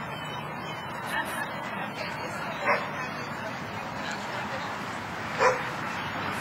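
A dog barking three short times over steady background noise: once about a second in, once midway through, and loudest near the end.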